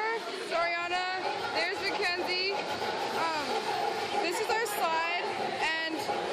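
Speech only: voices talking and chattering.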